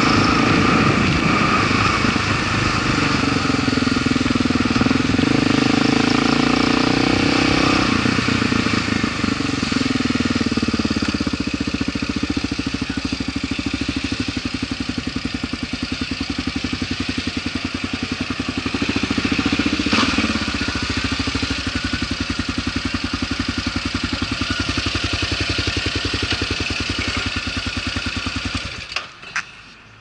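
Kawasaki KLR650 single-cylinder engine, fitted with a 42mm Mikuni flat-slide carburettor, running under way. It slows down about a quarter of the way in, then runs at low speed with a steady thump, gives a short rev about two-thirds through, and is switched off just before the end.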